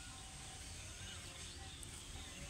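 Faint outdoor ambience: a low steady rumble of wind or handling noise, with a few faint, distant chirping bird calls.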